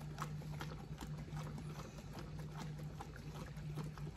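Glass jar of vodka and vanilla beans shaken by hand: liquid sloshing inside the capped jar with a run of irregular soft clicks and knocks.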